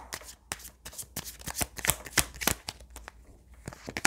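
A deck of tarot cards shuffled by hand: a quick, irregular run of soft card slaps and clicks that thins out near the end.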